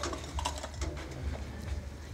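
Scattered light clicks and clinks of a metal aspergillum being dipped into its silver holy-water bucket, with some handling noise from a hand-held microphone.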